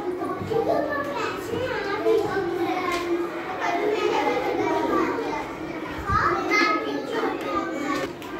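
A group of young children talking and calling out over one another: a continuous, overlapping chatter of small voices.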